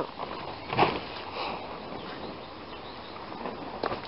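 Footsteps and handling noise from someone moving through a garden: one short knock or rustle just under a second in, then faint steady outdoor background.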